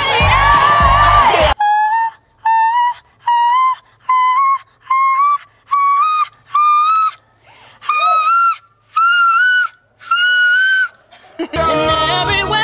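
A woman's voice sings unaccompanied in the whistle register: about a dozen short, separate notes, each about half a second, stepping gradually upward in pitch to around E-flat six. Backing music with singing plays in the first second and a half, cuts off, and comes back near the end.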